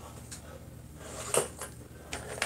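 Quiet room with light handling noises: a faint tap early on, then a sharper brief knock about one and a half seconds in.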